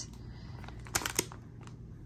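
Quiet handling of a plastic-packaged pen set, with two light clicks about a second in over a low steady hum.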